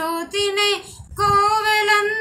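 A woman singing a Telugu song unaccompanied, drawing out the words on held notes, with a short break for breath about a second in before another long held note.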